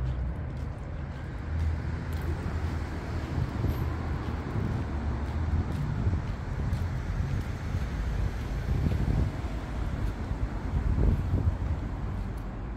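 Steady low rumble of outdoor street ambience, with wind buffeting the microphone.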